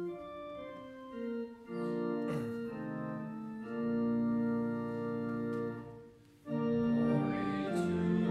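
Church organ playing held chords of a hymn tune, leading into the next stanzas; the sound briefly drops away about six seconds in and then comes back fuller.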